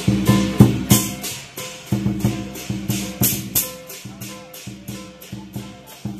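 Chinese lion dance percussion: a drum with clashing cymbals and a gong, played in a fast, driving rhythm of about three to four strikes a second.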